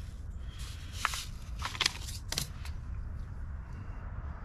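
A few short, light crackles and ticks of a small paper seed packet being handled and tapped as lettuce seeds are shaken out into a palm, over a steady low background rumble.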